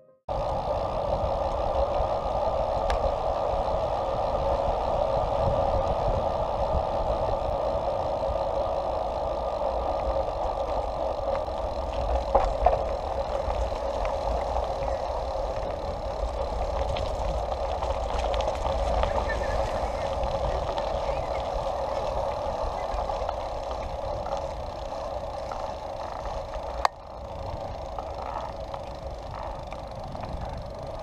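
Steady rushing noise of riding a bicycle with a handlebar-mounted action camera: wind on the microphone and tyres rolling over gravel and then pavement. A sharp click comes near the end, after which the noise is quieter.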